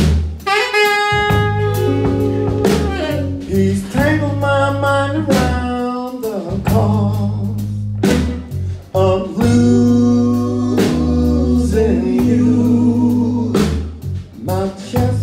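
Live blues-soul band playing: electric bass and drum kit keep a steady slow groove under a saxophone and vocal melody line.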